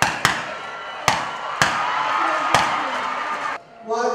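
Five sharp rifle shots, irregularly spaced over about two and a half seconds, over a steady background din. The sound cuts off suddenly near the end.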